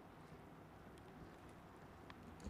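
Near silence: room tone, with a few faint ticks.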